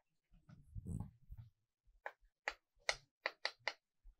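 Chalk writing on a blackboard: short sharp taps and scrapes of the chalk as characters are written, about five in quick succession in the second half. About a second in there is a low muffled sound, the loudest thing in the stretch.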